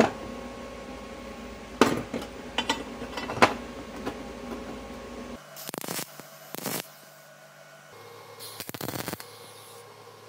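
Steel parts clinking and knocking against a steel welding table and clamps as they are fitted into a corner jig, a few sharp knocks in the first few seconds. Then three short bursts of arc welding, tacking the pieces together.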